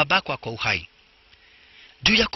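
A voice speaking for under a second, then a faint steady hum with light hiss.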